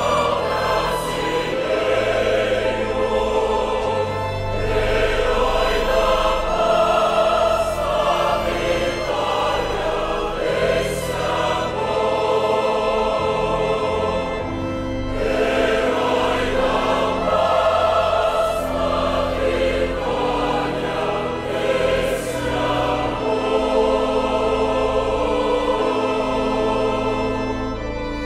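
Choir singing a Portuguese hymn over a sustained instrumental accompaniment.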